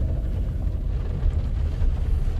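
Steady low rumble of a car's engine and tyres, heard from inside the cabin while driving slowly.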